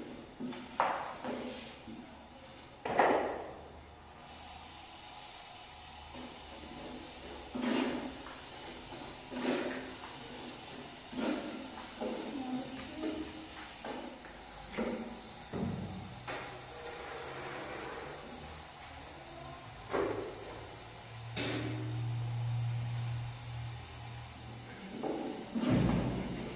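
A long, thin wooden rolling pin rolling and knocking on a round wooden board as flatbread dough is rolled out thin, in irregular strokes every second or two. A low hum comes in for a few seconds in the second half.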